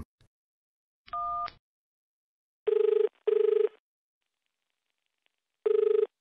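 Telephone call sound effect on a landline. A short beep about a second in, then the phone ringing in a double-ring pattern (two short rings close together), heard twice about three seconds apart.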